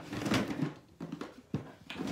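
Plastic storage drawer being handled and pulled open, a scraping rattle followed by three short knocks from the plastic and the toy monster trucks inside.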